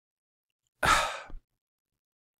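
A man's single breathy sigh, about half a second long, about a second in.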